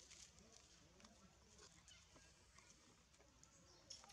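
Near silence: a faint outdoor background with a few soft scattered clicks and a sharper click near the end.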